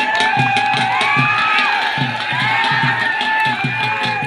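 Dhol drums beating a steady rhythm of about three strokes a second, under a large crowd cheering and shouting with long rising and falling calls.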